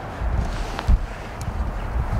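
Wind buffeting the microphone, heard as an uneven low rumble, with a couple of faint clicks near the middle.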